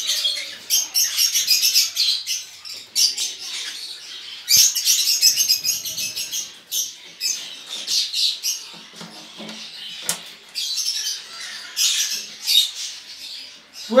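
Small caged parrots chattering and squawking in repeated high-pitched bursts, with a sharp click about ten seconds in.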